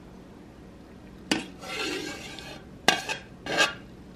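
A metal spoon scraping soft ice cream out of an ice cream maker's metal canister: a knock about a second in, a scrape, then two sharp clinks about three seconds in and another short scrape near the end.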